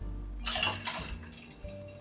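Sweet vermouth poured into a copper cocktail shaker tin holding ice: a short splash of liquid about half a second in, under soft background music.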